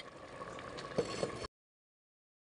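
Potato and bean curry simmering in an earthenware handi: a soft, low bubbling with a couple of small pops about a second in. The sound cuts off abruptly about halfway through.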